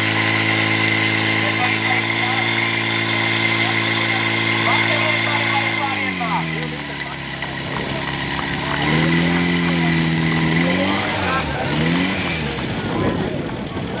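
Portable fire pump's engine running steadily at high revs while pumping, then throttled down about six seconds in. It is raised again briefly around nine seconds, given two quick rev blips a little later, and settles to a low idle near the end.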